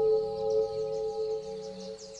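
Meditation music: a sustained, bell-like chord of steady tones over a low drone, slowly fading away, with faint birdsong chirping high above it.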